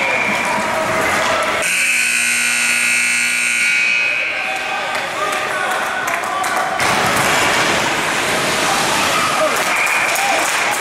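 Arena scoreboard horn sounding one steady buzzing blast of about two seconds, starting a couple of seconds in, as the game clock runs out. Rink noise and voices carry on around it.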